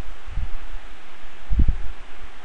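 Steady hiss from the recording microphone, with two short low thumps, one about half a second in and a louder one about a second and a half in.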